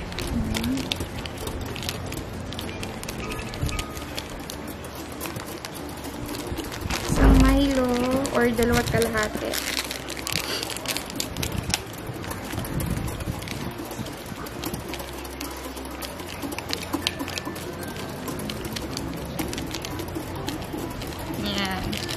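Plastic Milo sachets crinkling as they are torn open and shaken empty into a bowl, with many small crackles and clicks.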